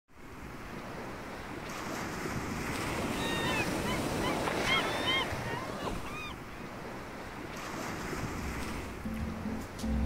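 Ocean waves washing, swelling and fading, with a few short, arching high calls in the middle. Music begins near the end.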